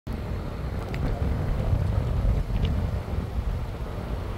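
Steady low rumble of a car driving on a paved road: road and wind noise, with a few faint ticks.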